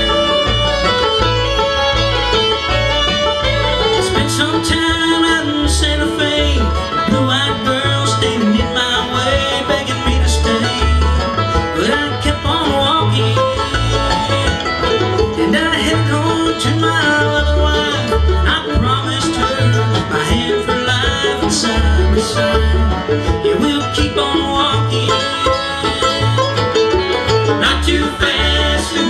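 Live bluegrass band playing an instrumental break, with banjo, fiddle, mandolin, acoustic guitars and upright bass; the bass keeps a steady beat under the banjo and strings.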